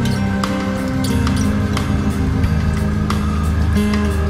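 Rock band playing an instrumental stretch: held electric guitar notes over a low bass line, with drum and cymbal hits at a steady pulse.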